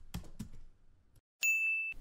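Keyboard typing sound effect, a quick run of light clicks about five a second, followed about one and a half seconds in by a single bright ding, the loudest sound, held for half a second and cut off sharply.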